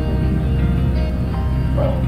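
Background music over the steady low drone of a boat's engine, heard from inside the wheelhouse.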